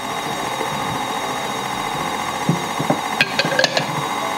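Background music over a stand mixer's motor running steadily, its flat beater mixing almond cream in a steel bowl.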